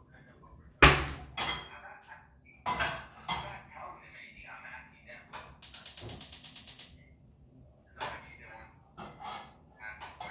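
Cookware being handled on a gas stove: a loud clank about a second in, followed by several more knocks and clatters. Near the middle, a rapid even run of sharp clicks lasts about a second and a half.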